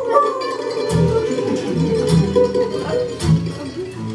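Acoustic guitar and mandolin playing a slow blues together, with the guitar's low bass notes falling about once a second under the mandolin's line.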